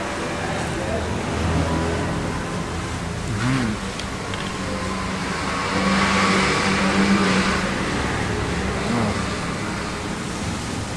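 A motor vehicle running close by, loudest about six to seven and a half seconds in, over low background voices.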